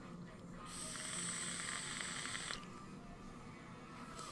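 Air hissing through the airflow holes of a rebuildable dripping atomizer on a Neptune V2 hybrid mechanical mod during a draw of about two seconds, cutting off abruptly; a fairly quiet draw.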